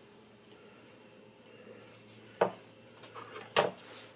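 Small tools being handled at a fly-tying bench: two short, sharp clicks about a second apart, the second a little louder, with a few faint ticks around them.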